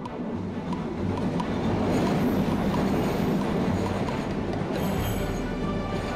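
Cartoon train sound effect: a train rushing through a tunnel, its rumble swelling over the first few seconds and easing off, over background music.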